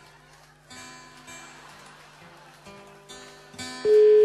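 Quiet acoustic guitar music, strummed. Near the end a loud, steady single-pitch telephone ringing tone starts: the call is ringing and no one has answered yet.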